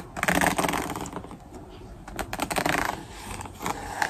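Hairbrush bristles brushed across a spiral notebook's cover in two strokes, each a dense run of fine rapid clicks and scratches.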